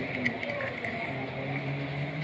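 Two sharp metallic clicks of pliers working on a wall switch's screw terminals, over a steady low hum.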